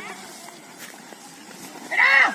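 Outdoor background with faint voices and a few light ticks, then a loud drawn-out shout from a man driving the yoked bulls, starting right at the end.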